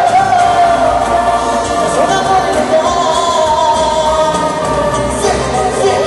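Live band music with a lead singer's voice carrying the melody over a steady bass line.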